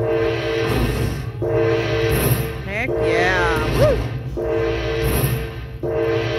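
Aristocrat Dragon Link slot machine playing its win tally tune as the bonus total counts up on the meter. A held chord repeats about every one and a half seconds, with a run of falling electronic sweeps about halfway through.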